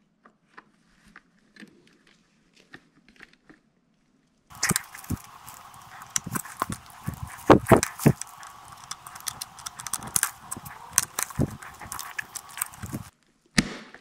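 Hard plastic clicks and knocks as side brushes are handled and pressed onto the underside of a Proscenic 850T robot vacuum. The clicks are sparse and faint at first, then come thick and fast over a steady hiss that starts suddenly about four and a half seconds in and cuts off about a second before the end.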